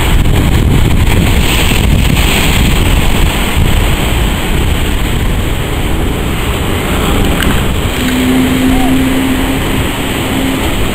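Wind buffeting the microphone over breaking surf, with a motorboat's outboard engine running as the boat crosses the bar. A steady low droning note joins near the end.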